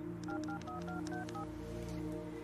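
Touch-tone dialing on a telephone handset: seven quick keypad beeps, each a pair of tones, over soft background music.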